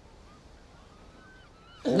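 Quiet outdoor ambience with a few faint, distant bird calls, short thin whistles that rise and fall, in the middle of the stretch. A man's voice comes in right at the end.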